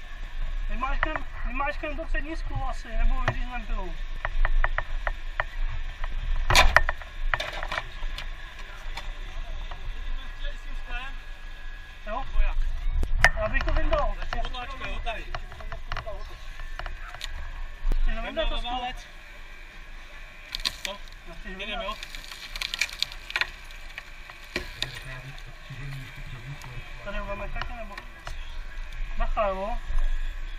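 Rescue crew talking intermittently while working on a wrecked car, with a run of rapid clicks early on, a sharp crack about six and a half seconds in, and scattered knocks and cracking through the rest.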